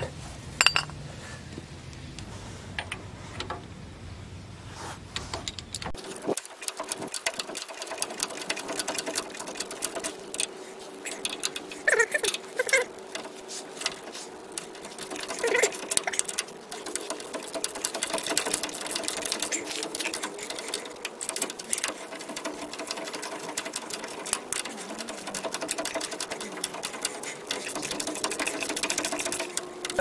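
Hand socket ratchet clicking rapidly in quick strokes, tightening a nut onto a steering spindle's stud. The clicking starts about six seconds in, after a quieter stretch of handling.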